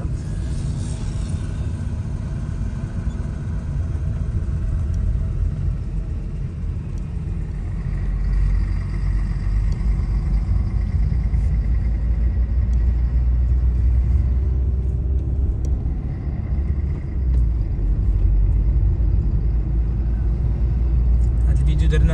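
Low, steady rumble of a car's engine and tyres heard from inside the cabin while driving, growing louder about eight seconds in.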